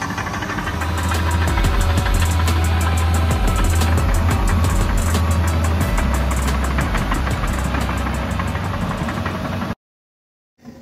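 John Deere crawler dozer's diesel engine running steadily under load as it pushes brush and dirt, with repeated clanks over it. The sound cuts off suddenly near the end.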